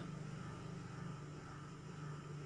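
Steady low hum with a faint hiss: room background noise.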